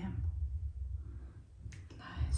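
Low rumbling handling noise from a handheld phone rig being carried and moved. A couple of faint clicks come near the end.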